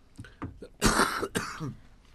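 A person clearing their throat into a studio microphone: a harsh cough-like burst a little under a second in, then a second shorter one.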